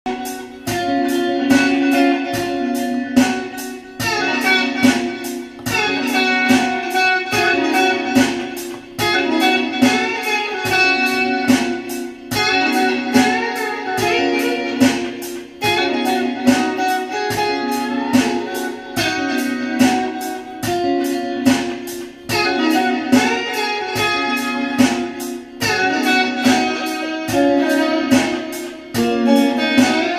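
Telecaster-style electric guitar played with a pick: a steady run of quickly picked notes in a phrase that repeats every few seconds.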